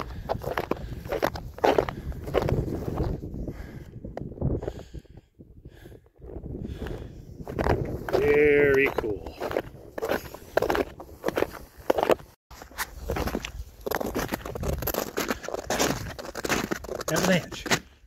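Footsteps in snow, a person walking steadily, with a short wavering call lasting about a second near the middle.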